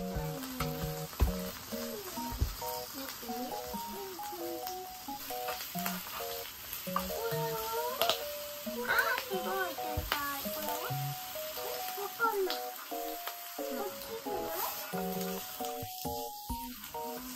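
Hamburger patties frying on a flat griddle, a steady sizzle under background music with a simple note-by-note melody.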